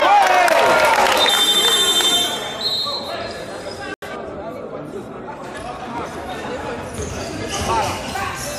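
Indoor basketball game sound in an echoing gym: players' voices and high shoe squeaks with a ball bouncing on the hardwood court. It is loudest for the first two seconds or so, and there is a brief dropout about four seconds in.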